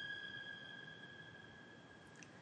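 Background score: a single high violin note held steady, fading away to near silence.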